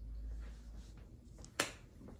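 A single sharp click about one and a half seconds in, over a low steady room rumble.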